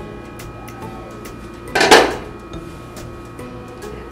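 A person sniffing deeply once, about two seconds in, smelling the freshly uncovered chicken yakhni pulao, over soft background music.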